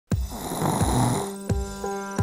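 Cartoon snoring sound effect: one long breathy snore that fades out a little past a second in. It plays over background music with a regular drum beat, and a steady tune comes in about a second in.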